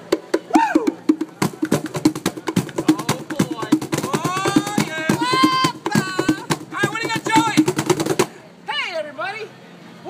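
Two Meinl cajons played by hand in a fast, dense rhythm of sharp knocks and deeper slaps. The drumming starts after about a second and a half and stops suddenly about eight seconds in, with voices over the second half.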